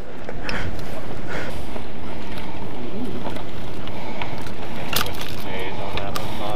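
Wind buffeting the action camera's microphone: a steady rushing noise with a low rumble. A sharp click about five seconds in.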